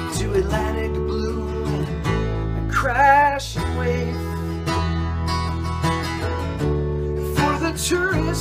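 Acoustic guitar strumming over a bass guitar holding long low notes, in an instrumental passage of a folk song. A short wavering note sounds about three seconds in.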